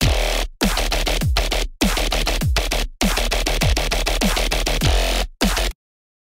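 Dubstep bass line playing back from the FL Studio project: dense, noisy synth bass stabs, each starting with a falling low note. It comes in chopped phrases with short breaks and cuts off abruptly near the end.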